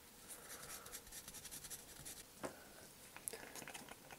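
Faint scratching of a hand file on a die-cast metal car body, filing back dried glue, with a sharp tap about two and a half seconds in.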